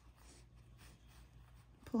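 Faint soft rustling of acrylic-looking yarn being drawn through crocheted stitches with a metal yarn needle, a few light swishes, with a woman's voice starting right at the end.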